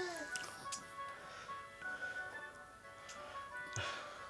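Electronic melody from a baby's musical play gym: a simple, tinkly tune of slow, held notes.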